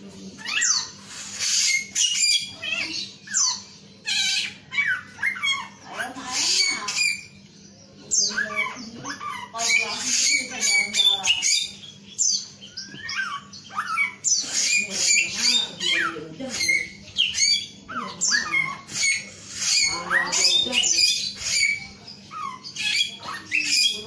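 A caged male samyong singing vigorously: a long run of rapid, varied chirps and quick up-and-down whistled notes, broken by a few short pauses.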